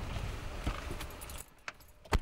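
A driver climbing into a car's seat with keys jangling, with a knock about two-thirds of a second in. The background then drops sharply, and a single click follows near the end.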